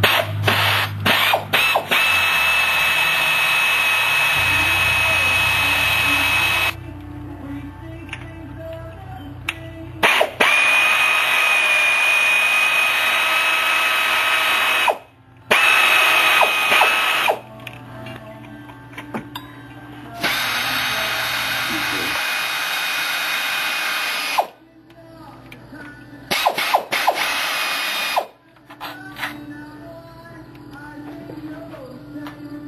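Power tool running in about five bursts of two to six seconds each, with a steady high whine, starting and stopping abruptly.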